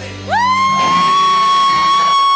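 A high-pitched cheer from someone in the audience: one long 'woo' that swoops up and then holds steady. Just before it, the band's last chord is dying away.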